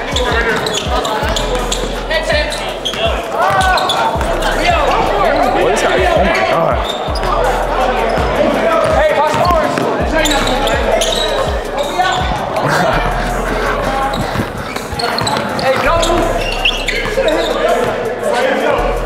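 A basketball being dribbled on a hardwood gym floor, bouncing in irregular runs of thuds, under continual voices of players and spectators in a large echoing hall.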